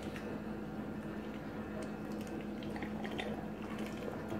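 Quiet room with a steady low hum and a few faint, wet little clicks of someone sipping from a mug.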